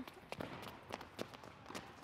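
Faint, quick footfalls of children's trainers landing on an indoor tennis court, a few a second, as they jump in and out of an agility ladder and jog.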